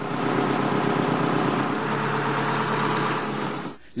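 A fishing boat's engine running steadily with a low hum, under a loud, even hiss. It cuts off just before the end.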